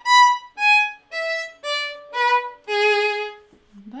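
Solo violin played slowly, about seven separate bowed notes with short breaks between them, stepping downward overall and ending on a longer, lower note: a passage taken note by note to show its shifts.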